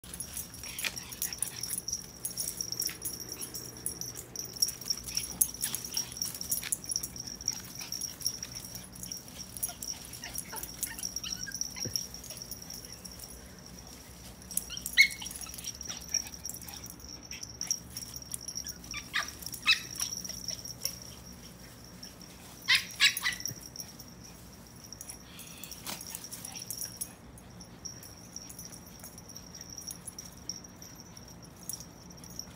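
Small dogs playing rough, with scuffling and scattered short yips and barks; the loudest come about halfway through and as a close pair some eight seconds later.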